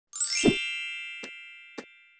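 Intro logo sound effect: a bright, many-toned chime that sweeps up and lands with a low thump about half a second in, then rings down slowly. Two light clicks follow.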